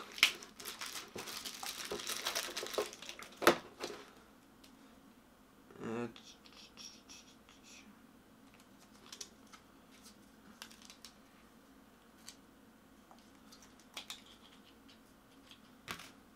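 Packaging crinkling densely for about three seconds as a camera battery is unwrapped, then a sharp click. After that, mostly quiet handling with a few faint taps and clicks.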